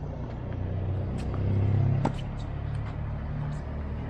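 A few sharp pops of tennis balls being struck by rackets and bouncing on a hard court, over a low rumble that swells and fades around the middle.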